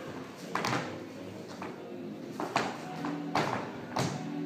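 Dance shoes stepping and tapping on a hardwood floor, the taps mostly in quick pairs, over faint music.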